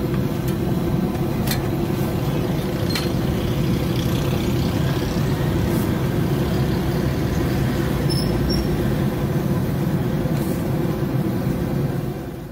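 A steady low rumble with a constant hum running under it, and a few faint clicks scattered through.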